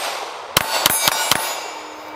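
Walther Q5 Match 9mm pistol fired in a fast string of about five shots, with steel plate targets ringing from the hits.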